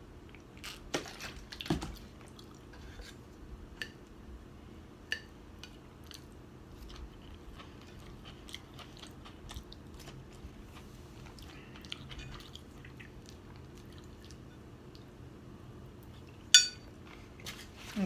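Close-up eating sounds: chewing and light crunching of steamed vegetables and chicken, with many small clicks throughout. There are two louder knocks in the first two seconds and a single sharp clink near the end, as a metal fork is set down on a ceramic plate.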